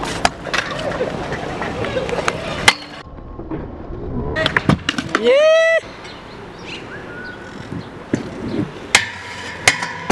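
Freestyle scooter wheels rolling over concrete, with several sharp clacks of deck and wheel impacts from landings. About five seconds in, a single loud drawn-out shout rises in pitch and holds.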